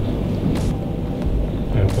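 Steady low background rumble with a couple of faint clicks; a voice begins near the end.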